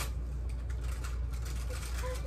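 A steady low hum of background noise, with faint light handling sounds.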